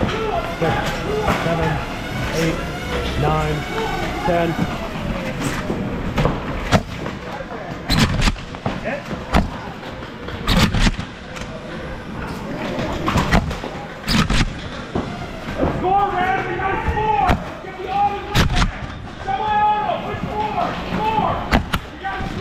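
Irregular sharp cracks of foam blasters firing and projectiles hitting cover in a foam-blaster game, among the voices of players calling out.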